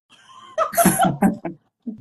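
Laughter in a few short breathy bursts, mixed with a little speech.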